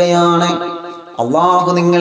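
A man chanting into a microphone in long, held melodic notes, breaking off for a breath about a second in, then gliding up into the next held note.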